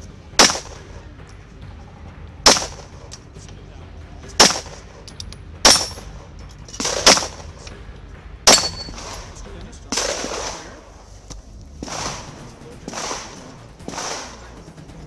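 Six single gunshots, each sharp and loud, fired at an even pace about one and a half to two seconds apart.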